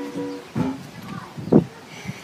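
A ukulele chord strummed twice in quick succession near the start, ringing briefly, followed by a few softer sounds and a short thump about one and a half seconds in.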